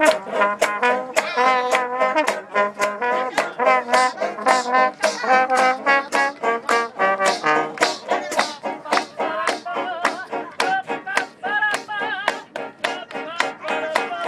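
A small acoustic band plays lively old-time jazz: trombones carry the tune over a banjo strummed in a steady beat.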